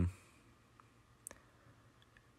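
A single sharp computer mouse click a little past halfway, over quiet room tone.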